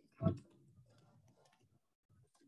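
Bare feet of several people jogging on padded martial-arts mats: faint, irregular soft taps, with one short, louder sound about a quarter second in.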